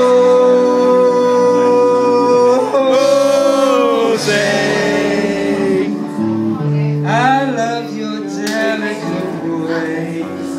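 A man singing live into a microphone with instrumental accompaniment: a long held note, then a wavering note, and about seven seconds in a quick run of bending notes.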